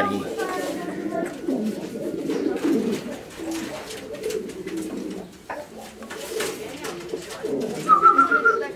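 Several domestic pigeons cooing, their low rolling coos overlapping one another continuously; the cocks in front bow as they coo, the bow-coo display of male pigeons.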